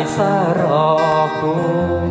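Thai folk song performed live: a male voice sings a drawn-out, wavering note over strummed acoustic guitar. The voice falls away a little after a second, leaving the guitar, and a deeper bass note comes in near the end.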